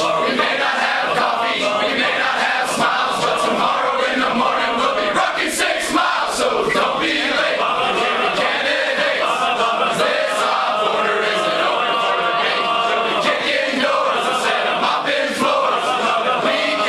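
A large group of men singing a military class song together in loud unison, part sung and part chanted, with some notes held long in the second half.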